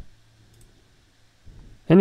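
Faint room tone with a steady low hum in a pause between spoken phrases; speech resumes near the end.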